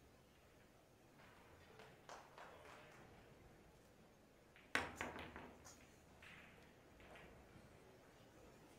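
A pool cue tip striking the cue ball with one sharp click a little past halfway, followed within a second by a few fainter clicks of Predator Arcos II balls knocking together.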